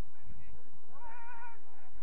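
A single drawn-out shout from a player on the pitch, rising and then held for about half a second, over low wind rumble on the microphone.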